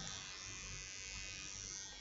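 Electric hair clipper running steadily at a constant speed, with a faint high buzz.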